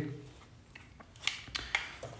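Quiet handling of a plastic 12 V, 5 A mains power-supply brick and its cable, turned over in the hands, with two faint clicks in the second half.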